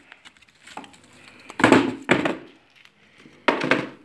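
Wood chips and offcuts clattering into the plastic bed of a toy dump truck: a loud burst about a second and a half in and a shorter one near the end.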